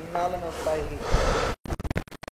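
People talking, cut off abruptly about three-quarters of the way through, leaving short choppy fragments of sound with gaps of silence.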